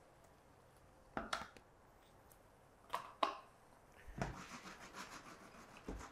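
Quiet, short scrapes of a metal spoon as ricotta is scooped and dropped into the pan: one about a second in and two close together around three seconds in. A soft, even rustling follows near the end.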